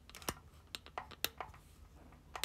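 A quick, uneven run of about a dozen light taps and clicks, the sharpest about a third of a second in and just past a second in, like fingers tapping on a device.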